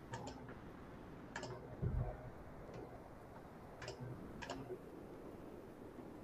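A handful of short, sharp clicks scattered over faint room noise, with a dull low thump about two seconds in.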